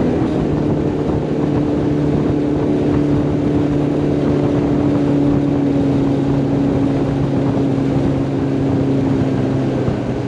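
Outboard motor running steadily at cruising speed, driving a small aluminum fishing boat, with water noise along the hull.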